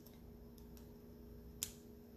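A metal watch band piece being pressed into a watch case: a few faint handling ticks, then a single sharp click about one and a half seconds in as it snaps into place, over a faint steady hum.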